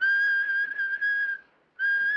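A high, steady whistle held on one pitch for about a second and a half. It breaks off, and a second whistle on the same pitch begins near the end.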